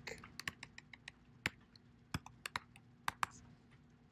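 Computer keyboard being typed on in a quick, irregular run of key clicks that stops a little after three seconds in.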